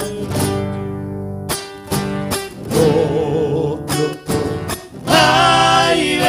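A live folk band plays strummed acoustic guitars over an electric bass. After an instrumental stretch, voices come back in singing about five seconds in.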